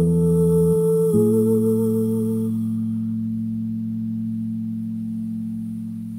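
Electric bass guitar's closing notes left to ring: a new low note about a second in that sustains and slowly fades. A woman's voice holds one long note over it for the first couple of seconds, ending the song.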